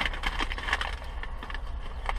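Paper fast-food wrapper crinkling and rustling as it is unwrapped by hand, a run of small irregular crackles over a low steady hum.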